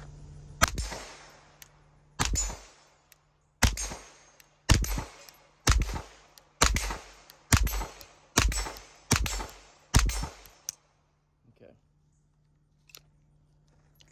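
Standard Manufacturing Jackhammer .22 LR direct-blowback semi-automatic pistol firing ten single shots of CCI Mini Mag ammunition, the first two spaced apart and the rest about one a second, emptying its 10-round magazine. A couple of faint handling clicks follow near the end.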